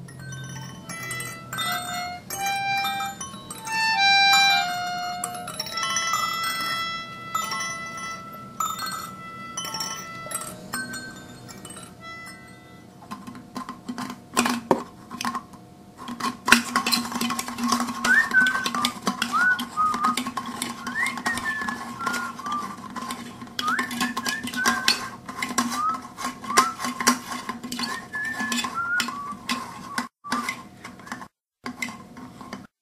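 A short tune of clear, separate notes plays for about the first twelve seconds. From about thirteen seconds in, a stick stirring paint in open metal paint cans makes repeated clinks and scrapes against the cans, over a steady hum with short high chirps.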